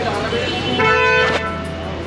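A vehicle horn sounds once, a short steady toot of about half a second, over a low steady hum.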